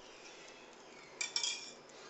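A metal kitchen utensil clinks twice against metal cookware about a second in, with a short ringing after.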